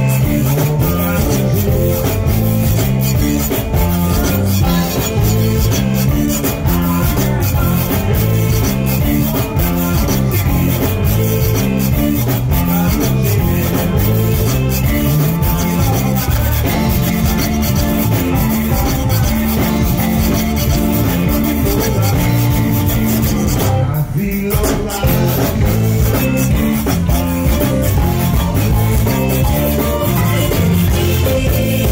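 Live zydeco band playing loudly with a steady beat: piano accordion, rubboards scraped in rhythm, electric guitar, bass and drum kit. The sound drops out for a moment about three-quarters of the way through.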